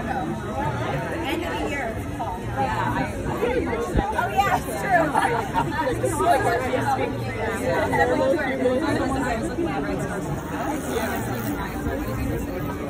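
People chatting in a crowd: several voices talking with no clear words, over a light babble of other people.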